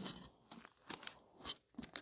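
Faint handling noises near an open Bible: a handful of short, crisp crinkles and rustles of thin paper pages being touched and shifted.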